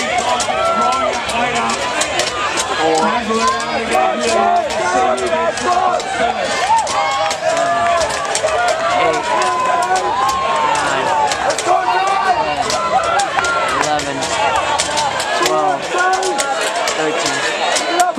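Crowd of spectators shouting and cheering, many voices overlapping into a steady din, with scattered sharp knocks throughout.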